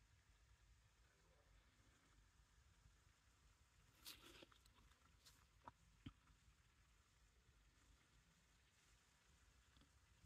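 Near silence, broken by a few faint taps and clicks about four to six seconds in from a clear nail-stamping stamper being handled against a metal stamping plate.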